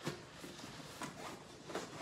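Hands rummaging in the pockets of a nylon tactical bag: faint fabric rustling with a few soft knocks.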